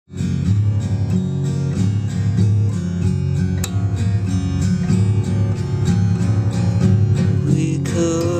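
Acoustic guitar in a very slack, detuned open tuning, picked and strummed in a steady pattern of about four notes a second over ringing low strings, opening a song.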